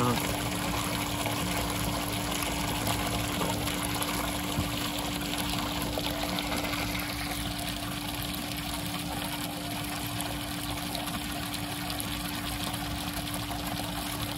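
Water pump running steadily in a turtle tub, a constant low hum with the outflow splashing and trickling into the water.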